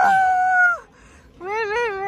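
A person's voice making two drawn-out high-pitched sung or called notes: the first rises, then holds steady for about a second, and the second, lower note, wavers up and down.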